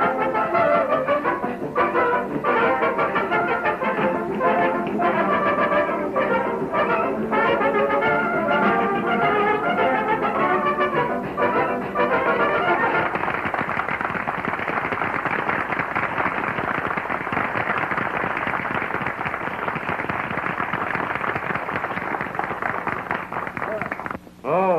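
A brass-led dance orchestra plays on an early sound-film soundtrack with a narrow, muffled range. About halfway through the music gives way to a steady, even rushing noise that lasts to the end.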